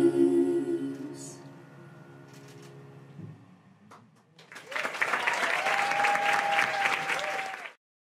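The final sung chord of a musical-theatre duet held for a few seconds and fading out, then about three seconds of audience applause and cheering that cuts off suddenly near the end.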